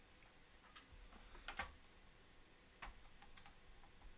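Near silence broken by a few faint, irregularly spaced clicks, the loudest a quick pair about a second and a half in.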